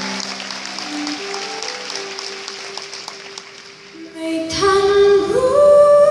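Live pop band music: a soft stretch of a few long held notes, then the full band with bass comes in loudly about four and a half seconds in.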